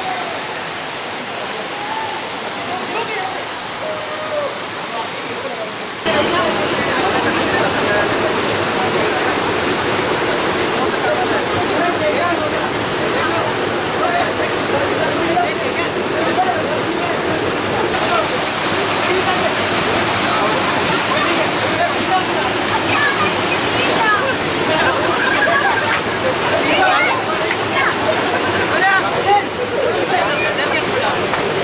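Water rushing steadily over rocks in a small waterfall and stream, noticeably louder from about six seconds in. Many people's voices chatter over the water.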